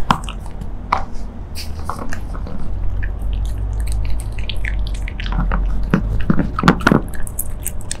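A Shiba Inu chewing and biting lamb meat stick dog treats, with irregular sharp clicks of its teeth and a run of louder bites about five to seven seconds in.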